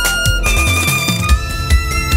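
Violin playing long held notes over a backing track of bass and drums, moving to a new note about half a second in.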